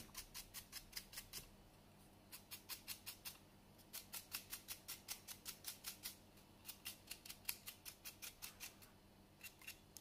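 Stiff paintbrush dry-brushing a plastic miniature with a heavy load of brass paint: quick scratchy strokes of the bristles flicking across the model, about five a second, in runs of one to two seconds with short pauses between.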